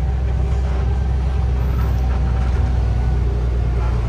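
Truck's diesel engine running with a steady low drone, heard from inside the cab while the truck moves slowly.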